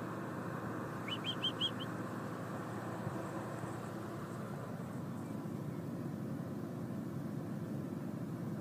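Steady hum of an engine running at the drilling rig, with a quick run of four short, high chirps about a second in.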